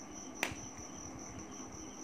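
Quiet room tone with a steady high-pitched whine running through it, and one sharp click about half a second in.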